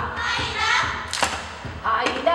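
Ipu, a Hawaiian gourd drum, struck for hula kahiko. There are sharp strikes near the start, about a second in and at the end, with a chanting voice between them.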